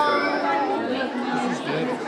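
Indistinct chatter of several people's voices talking over one another, with no clear words.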